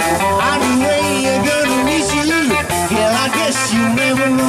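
Live blues-rock band playing: an amplified harmonica blown into a cupped handheld microphone, its notes bending up and down, over electric guitar, bass and drums.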